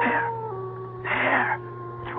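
Wolf howl sound effect: one long held note that drops in pitch about half a second in and fades out near the end, with two short rushes of noise over it.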